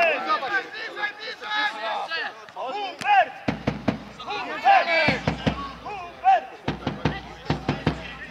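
Players' shouts and calls carrying across an outdoor football pitch, several voices overlapping, with scattered sharp knocks. From about three and a half seconds in, low rumbles of wind buffet the microphone in bursts.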